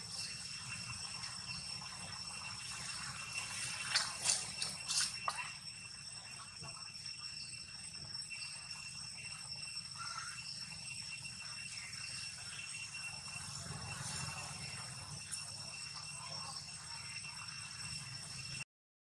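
Steady outdoor background hiss with faint high, steady tones and a low rumble, broken by a short cluster of sharp clicks about four to five seconds in.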